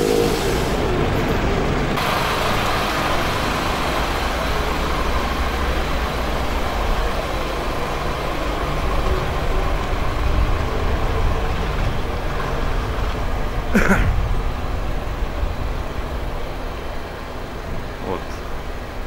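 Steady rumble of motor vehicles, with one sharp bang about fourteen seconds in.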